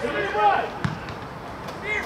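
A football kicked once, a single sharp thump a little under a second in, between shouts from the pitch.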